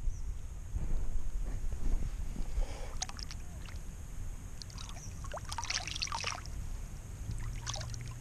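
Pond water splashing and sloshing as a small bass is lowered into it by hand and released, with short bursts of splashing about three seconds in, again around the sixth second and near the end as the fish kicks free.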